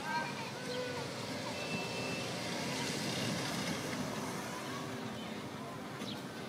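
A small car's engine running as it drives slowly across a grass field, rising a little about halfway through.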